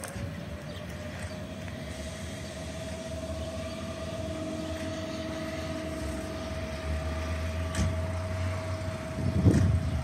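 Approaching locomotive-hauled electric passenger train with a steady whine that holds one pitch throughout. A low rumble builds over the last few seconds, and heavy wheel thumps come near the end as it draws closer.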